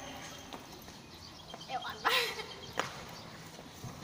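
Short giggles and vocal sounds from girls, with quiet stretches between them and a sharp tap near the end.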